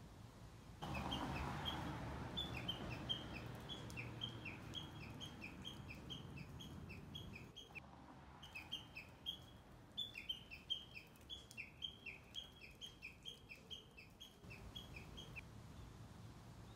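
A small songbird repeating a quick, high two-note chirp over and over, several times a second, with a brief pause about halfway through. A low rumble of background noise lies under the first half.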